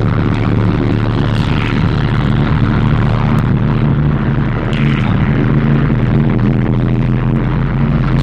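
Loud, bass-heavy electronic dance music from a DJ set over a club sound system, dominated by steady, droning deep bass notes.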